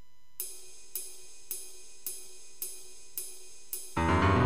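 Karaoke backing track opening with a count-in of seven evenly spaced hi-hat ticks, a little under two a second; the full accompaniment comes in right at the end.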